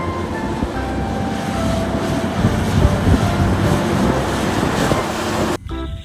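Heavy truck pulling a low-loader trailer along a highway: steady engine rumble and road noise. It cuts off suddenly near the end.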